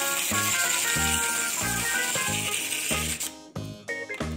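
Clockwork mechanism of a small plastic wind-up sea lion toy, a dense rattle that starts suddenly and cuts off after about three seconds, over background music with a steady beat.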